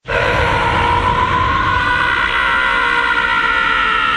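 A man's long, held battle scream from an anime character powering up, starting suddenly and sagging slightly in pitch, over a dense rumbling roar of energy-aura sound effects.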